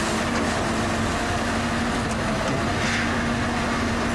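A crane's engine running steadily: a rough, even rumble with a constant hum through it.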